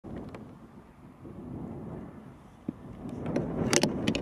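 Gusty wind buffeting the microphone, a low rumble that swells and fades, with a sharp tick and then a few short clicks near the end.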